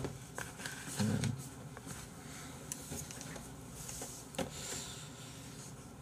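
Quiet room with a few faint clicks and light taps of wooden chopsticks stirring noodles in a plastic delivery bowl, and a short hum from the eater about a second in.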